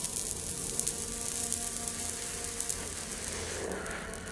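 Crackling, sizzling hiss of a lit cigarette burning during one long, drawn-out drag, an exaggerated comic sound effect, fading near the end.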